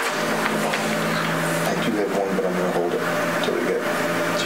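Steady room noise with a low hum and hiss, and faint, indistinct voices in the background.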